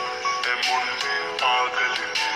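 A song with a singing voice playing through the small loudspeaker of a Samsung Galaxy M04 smartphone.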